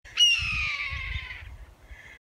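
A hawk's scream: one long harsh call that starts suddenly and slides down in pitch as it fades, over a low rumble.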